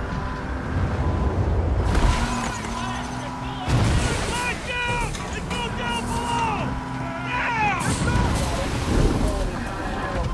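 Film sound of a fishing trawler in a storm at sea: heavy waves and wind rumbling and crashing, with men shouting indistinctly over it in the middle. Music plays faintly underneath.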